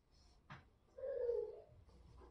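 A faint click, then a single short animal call about a second in, holding one pitch and falling slightly at the end.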